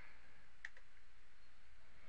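A single soft click from the computer controls about two-thirds of a second in, as the charts switch to the next profile, over a low steady hum.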